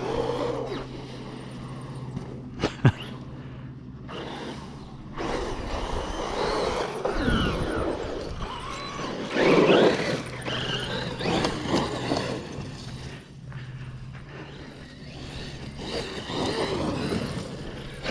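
Traxxas Maxx V2 RC monster truck with a Castle 1520 1650kv brushless motor on 6S, driven in throttle bursts through grass. The motor whine rises and falls with each burst, over a steady low hum.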